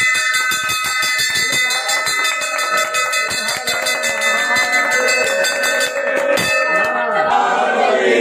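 Hanging brass temple bell rung by hand in rapid, continuous strokes, so that each clang runs into a sustained metallic ring. The ringing cuts off suddenly less than a second before the end, and a crowd of voices carries on underneath.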